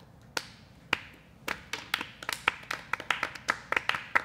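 A few people clapping by hand. It starts with single, spaced claps, and the applause quickly thickens as more hands join in.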